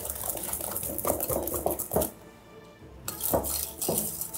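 Wire whisk beating egg yolks and sugar by hand in a stainless steel mixing bowl: a fast, rhythmic clatter of wires against the metal, with a brief pause about halfway. The yolks and sugar are being whipped toward ribbon stage.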